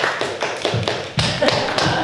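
A small audience clapping in scattered, separate claps, with a few low thuds of running footsteps on the stage floor.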